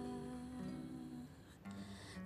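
Nylon-string classical guitar playing soft sustained notes and chords in a bossa nova accompaniment, fading lower near the end.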